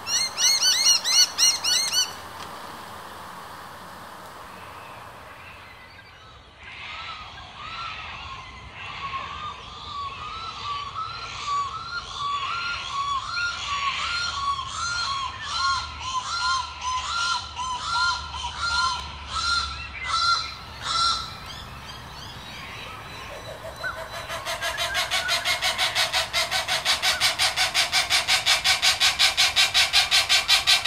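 Channel-billed cuckoos calling with loud, harsh, honking calls in repeated series. A short burst comes at the start, then a steady series of about one to two calls a second, then a fast run of calls near the end that grows louder.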